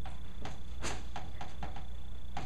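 Chalk on a chalkboard: a quick series of short scratchy strokes and taps as words are written, the sharpest a little under a second in, over a steady low hum.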